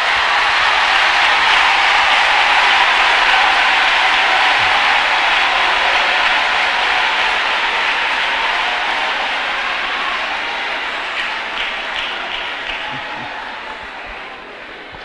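A large congregation applauding in a hall, swelling in the first couple of seconds, then slowly dying away near the end.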